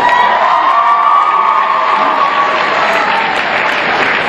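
Audience applauding and cheering, with one long high-pitched call held over it for the first three seconds or so.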